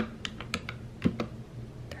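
Buttons of a plastic desk calculator being pressed: about seven short clicks at an uneven pace as a subtraction is keyed in.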